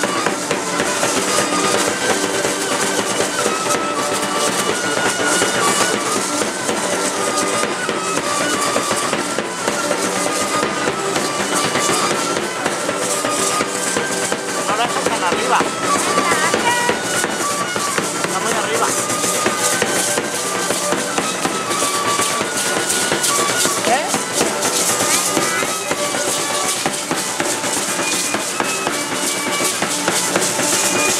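Live music for a danza de pluma (feather dance) playing a zapateado: a steady melody over a continuous drum beat, with percussive shaking and clattering throughout.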